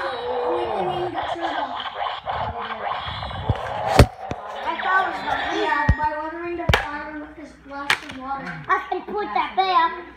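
A young child's voice chattering and making play noises, with about four sharp clacks in the second half, plastic toy swords striking.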